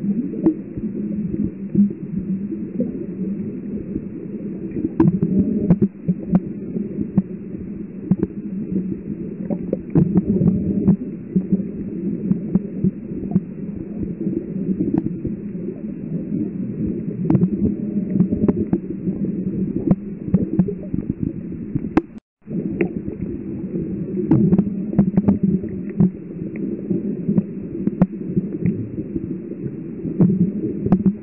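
Muffled underwater sound picked up by a submerged camera: a low, steady hum and rumble with scattered faint clicks. It cuts out briefly about 22 seconds in.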